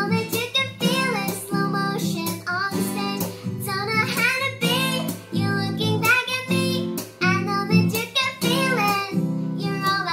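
A girl singing a pop ballad in English, accompanying herself by strumming a small acoustic guitar.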